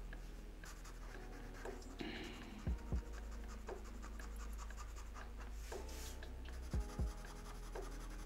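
Black marker pen scratching and rubbing on drawing paper in quick strokes as shadow is filled in. Two soft double knocks break in, about three seconds in and again near the end.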